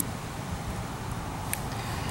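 Steady low outdoor background rumble, with a single faint click about one and a half seconds in as a fishing lure is handled over a plastic tackle box.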